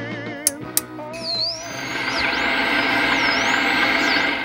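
The last wavering note of a song dies away, then two sharp clicks about half a second in. A swelling whoosh with swooping, dipping tones follows and builds steadily: a production-logo sound sting.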